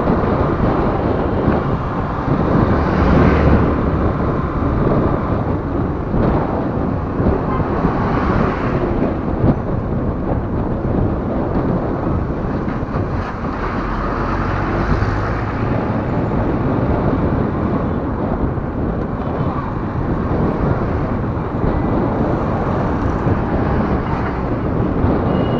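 Steady wind and road noise heard from a vehicle moving along a road, with traffic passing close by and swelling louder now and then.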